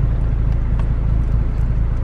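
Car engine idling, a steady low rumble heard from inside the cabin.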